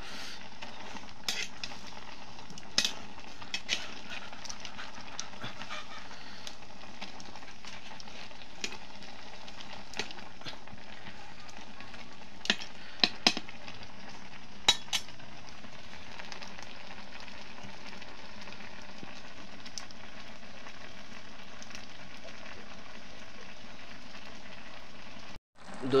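Green beans cooking in a steel kadai over a wood fire with a steady sizzle, while a metal spatula stirs them and knocks against the pan in scattered sharp clicks, several close together about 13 to 15 seconds in. The sound cuts out for a moment just before the end.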